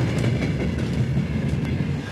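Steady low rumble from a parked passenger train.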